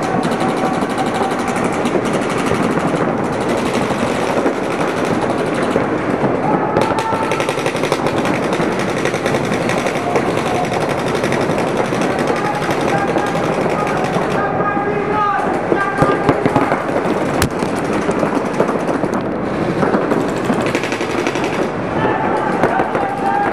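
Paintball markers firing in rapid, nearly continuous strings from several players at once, the shots overlapping into a dense clatter, with voices shouting over it.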